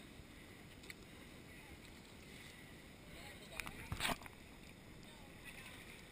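Steady rush of river water around inflatable rafts and kayaks, with a short cluster of sharp knocks and splashing about four seconds in, as from paddles striking the water and boats.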